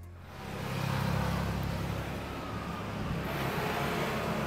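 Steady street traffic noise: the rumble and hiss of passing vehicles' engines and tyres.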